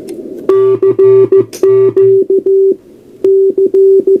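Morse code CQ sent from a memory keyer, heard as the sidetone of a scratch-built SST 20-metre QRP CW transceiver: one steady tone keyed in dits and dahs, starting about half a second in, with a short break near three seconds in. It plays through an external amplifier whose speaker buzzes along with the tone, mostly in the first half.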